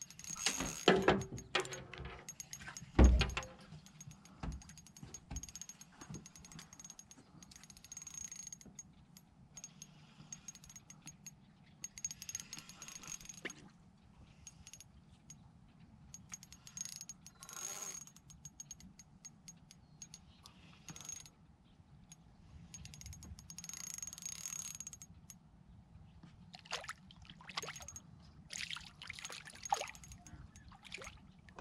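Spinning reel being cranked in short spells as a hooked panfish is reeled in, its gears giving a thin high whine, with a few knocks in the first three seconds. Some splashing comes near the end as the fish reaches the surface.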